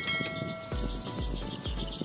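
A short bell-like chime rings and fades at the start, followed by low thuds repeating about twice a second.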